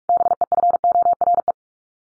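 Morse code sent as a keyed tone at 45 words per minute, short dits and longer dahs on one steady pitch for about a second and a half. It spells the practice word "before" (B-E-F-O-R-E), repeated in code after it was spoken.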